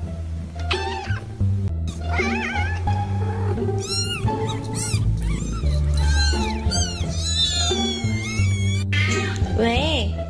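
Domestic cat meowing repeatedly, with short calls of varying pitch and one long drawn-out call near the end, over background music with a steady bass line.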